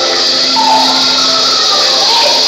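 Live gospel worship music: women singing into microphones over a continuously shaken tambourine, with a steady low tone underneath.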